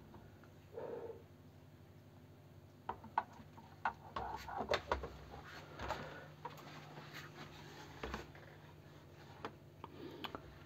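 Scattered light clicks and knocks of the clear plastic lid parts of a BiOrb Air terrarium being handled and fitted back on, a dozen or so in the middle of the stretch, over a faint steady hum.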